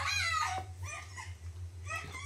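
A young girl's voice from the anime, crying out "Daddy! Mommy!" in a high, wavering, tearful pitch in several short cries, played back quietly over a steady low hum.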